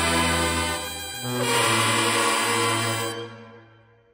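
High school marching band's brass section with sousaphones playing two long held chords, the second cut off about three seconds in and left ringing in the gym's echo.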